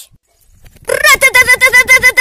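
A high voice making a fast run of short, evenly repeated pitched pulses, about eight a second, starting about a second in.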